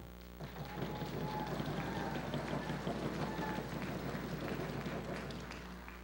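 Audience applauding, starting about half a second in and dying away near the end, over a steady low hum.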